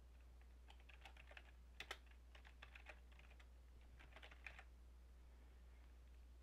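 Faint typing on a computer keyboard: several short runs of keystrokes with pauses between them, one clack about two seconds in standing out above the rest.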